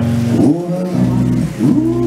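Live acoustic music from cello and acoustic guitar, with low sustained notes. A note slides up about a second and a half in and is held.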